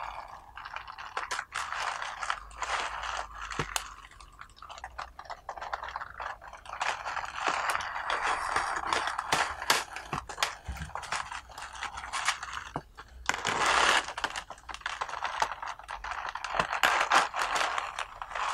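Compressed raw pu-erh tea cake (sheng puer bing) being handled close up: irregular dry crackling and rustling of the pressed leaves, with many small sharp clicks and louder stretches about halfway and near the end.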